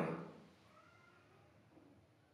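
A man's voice trailing off at the very start, then near silence with a faint, brief high-pitched wavering call in the background.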